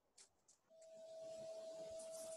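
Near silence on the call's audio, with a faint steady hum coming in just under a second in.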